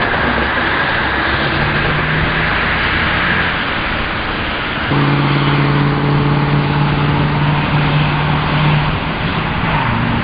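A motor vehicle engine running over a steady rushing traffic noise. Its low hum grows louder about halfway through and drops in pitch near the end.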